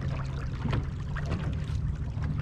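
Small waves lapping and splashing irregularly against a bass boat's hull, over a steady low rumble.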